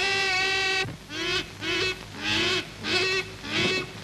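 A woman's voice on an old film soundtrack holds one long note, then breaks into a run of short rising-and-falling cries, about two a second.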